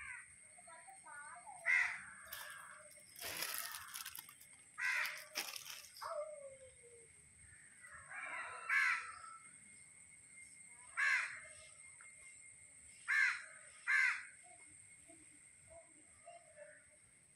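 A bird calling outdoors, a short harsh call repeated about six times a few seconds apart, the last two close together near the end. Two brief scratchy noises come early on between the calls.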